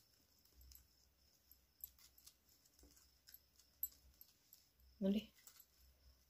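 Faint scattered clicks and rustles of plastic craft wire being handled and pulled tight into a woven knot. There is a brief bit of voice about five seconds in.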